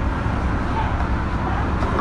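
A steady low rumble of background noise, even in level and without clear strokes or rhythm.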